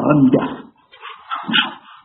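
A man's speaking voice that trails off about half a second in, followed by a pause with a few faint, brief sounds.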